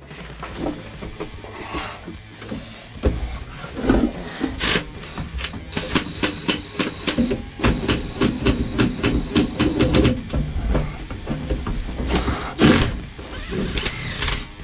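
Work on a stubborn, greasy bolt in a steel truck floor: scattered knocks, then a long run of rapid, evenly spaced metallic clicks, then one short loud burst from a cordless power tool near the end.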